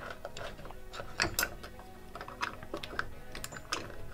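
Light metallic clicks and scrapes as the two pad-retaining pins are worked out of a Wilwood PowerLite four-piston caliper: an irregular run of small ticks, a few sharper ones about a second in and again near the end.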